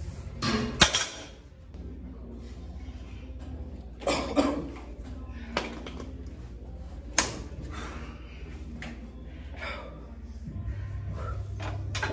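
A loaded deadlift barbell, about 475 lb, set down on the gym floor about a second in with a loud clank of the plates, followed by a few scattered knocks and clinks of gym equipment.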